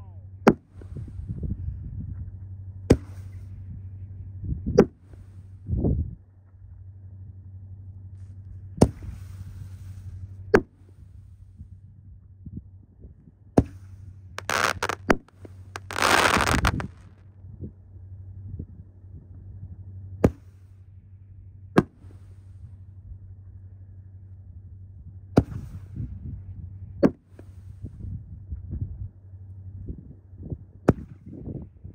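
Five-inch canister aerial fireworks shells firing in sequence: sharp booms of launches and breaks every few seconds, with two longer, loud noisy bursts about halfway through as a glittering shell breaks overhead.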